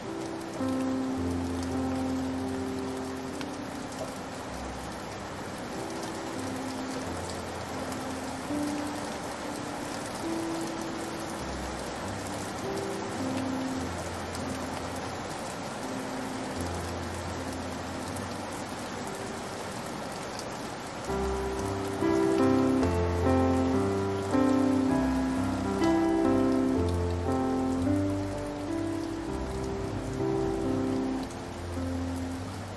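Steady rain falling, with soft, slow piano notes played over it. About two-thirds of the way through, the piano becomes louder and busier.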